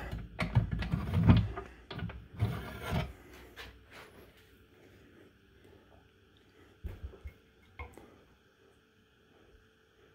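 Knocks, clunks and scraping from a resin printer's build plate and print being handled and taken out of the printer, busiest in the first three seconds, then a couple of faint clicks later on.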